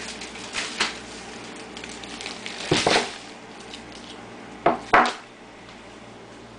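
A few short knocks and clatters against a quiet room background: two small ones just under a second in, a longer clatter near the middle, and the two loudest, sharp and close together, near the end.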